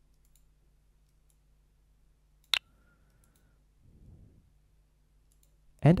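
A single sharp computer mouse click about two and a half seconds in, against otherwise quiet room tone, with a faint soft rustle about four seconds in.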